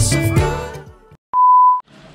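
Background music with a beat fading out, then, after a moment of silence, a single steady electronic beep about half a second long, a pure high tone of the kind edited into videos.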